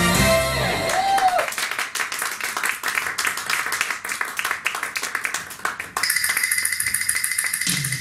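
J-pop idol medley music moving from one song into the next. A held note ends about a second in, then a bass-less stretch of rapid sharp clicks follows, and a new song starts abruptly about six seconds in, its bass coming in near the end.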